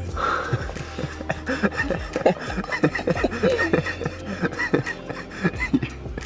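A woman laughing and giggling in quick, breathy bursts, over the low steady bass of background music.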